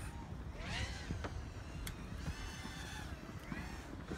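Wind buffeting the microphone as a steady low rumble, with faint voices in the background and a single sharp click about two seconds in.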